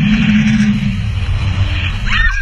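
Jet ski engine running at speed under a loud, steady rush of wind and water spray on the microphone.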